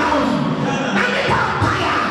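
A woman's voice calling out loudly into a handheld microphone, amplified through a hall PA system, with music playing underneath.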